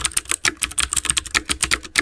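Typing sound effect: a rapid, even run of key clicks, about ten a second, accompanying text being typed out on screen.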